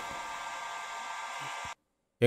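Steady hum and fan noise with a faint steady whine from an INVT solar pump drive (variable-frequency drive) running in its control cabinet. The sound cuts off suddenly near the end.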